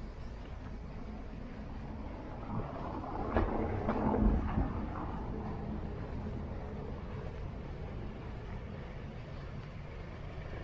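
Steady outdoor street background noise, with a louder stretch of knocks and rumbling from about two and a half to five seconds in.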